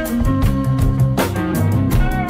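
Recorded music played from DJ decks in a continuous DJ mix, with a bass line and a beat.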